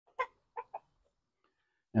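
Chickens clucking: three short clucks, the last two close together.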